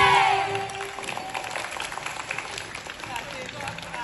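A children's choir ends its song on a held final note that fades within the first second, followed by an audience clapping and applauding.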